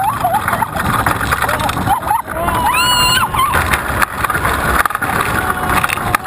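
Roller coaster ride heard from the car, with wind and track rush buffeting the microphone. A rider gives short high-pitched cries at the start and a longer high yell about three seconds in.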